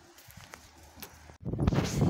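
A few faint clicks and knocks. Then, about a second and a half in, wind starts buffeting the microphone loudly with a rough, gusty rumble.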